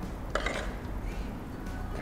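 Low, steady room noise with a faint hum and one brief click about a third of a second in.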